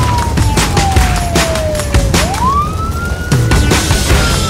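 Background music with a steady beat, over which a siren wails: one tone falls slowly, swoops sharply back up about two seconds in, holds, and then begins to fall again.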